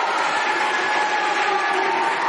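Audience in a hall applauding steadily, with faint voices underneath.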